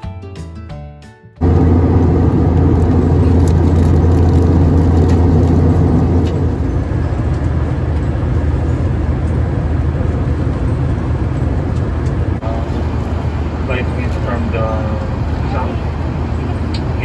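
Airliner cabin noise: a loud, steady roar with a deep hum that cuts in abruptly after a second or so of soft background music. A voice is heard over the roar near the end.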